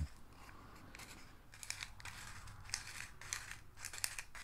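Faint scattered light clicks and rustles, like small handling noises, over a quiet room.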